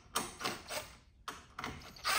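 Cordless Ryobi impact driver run in several short trigger bursts on the supercharger cover bolts, backing them off.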